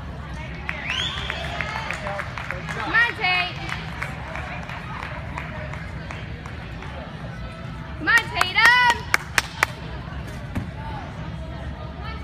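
Spectators shouting high-pitched cheers of encouragement to a gymnast on the uneven bars, in short calls about a second in, around three seconds in and loudest at eight to nine seconds in, over the steady low rumble of a large gym hall. A few sharp snaps come just after the loudest cheers.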